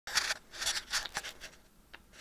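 Four short rustling noises in the first second and a half, then a faint click near the end.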